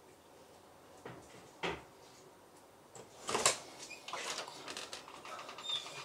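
A few short knocks, a louder clatter about three and a half seconds in, then light rattling, like a door or latch being handled.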